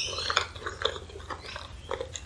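Close-miked wet chewing of a mouthful of chili dog, with a wet smack right at the start and scattered soft mouth clicks after it.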